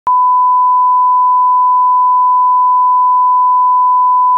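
Steady 1 kHz line-up test tone, the reference tone that accompanies colour bars. It starts with a click just after the beginning and holds one unchanging pitch.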